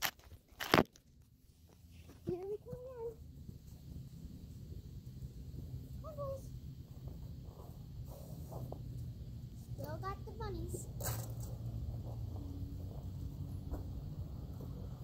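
A single sharp knock about a second in, as the phone is set down, then a low steady rumble with a few short wavering vocal sounds.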